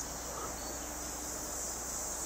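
Steady, high-pitched chorus of summer insects, droning evenly without a break.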